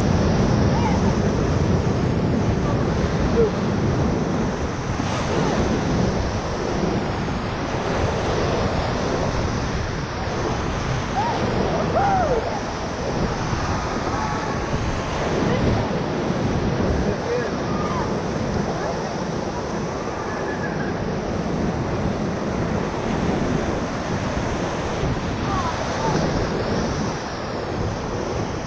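Whitewater rapids rushing and churning around an inflatable raft, a steady loud roar of broken water that eases slightly after the first ten seconds or so.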